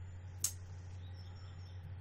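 Pause in the talk: a steady low hum with a single sharp click about half a second in.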